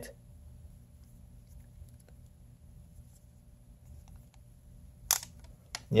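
Faint clicks of a hard plastic phone-case end piece being worked against the phone's edge, then a sharp plastic snap about five seconds in and a smaller click just before the end.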